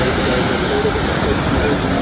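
Ocean surf breaking and washing up the beach as a steady roar, with wind rumbling on the phone's microphone.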